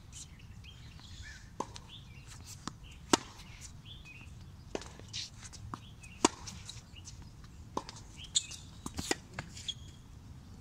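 Tennis balls struck by racquets in a warm-up rally: two loud, sharp racquet hits about three seconds apart, with fainter hits and ball bounces between them.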